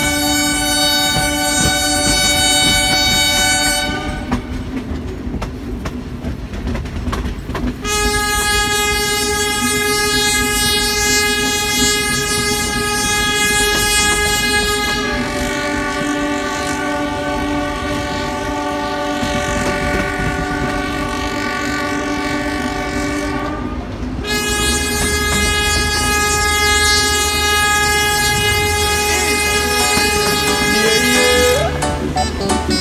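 A train's locomotive horn blowing long, loud, sustained blasts, a chord of several tones that shifts slightly about halfway through. It breaks off for a few seconds early on and again briefly near the end, and under it runs the steady rumble and clatter of the carriages on the track.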